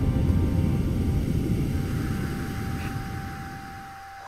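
Film soundtrack: a low, rumbling drone under held musical tones, fading steadily across the few seconds until mostly a single held tone is left.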